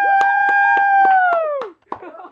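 A voice holding one long, high, steady note for nearly two seconds, then sliding down and breaking off, with several sharp knocks over it.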